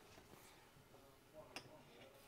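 Near silence, with one faint click about one and a half seconds in as a metal micrometer is handled against a frozen steel bearing race.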